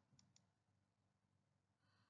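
Near silence between sentences of narration, with only two very faint ticks early in the pause.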